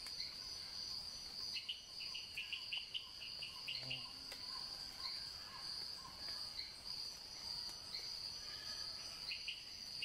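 Steady high-pitched trilling of insects, with a run of short bird chirps from about a second and a half to three and a half seconds in, and a few more near the end.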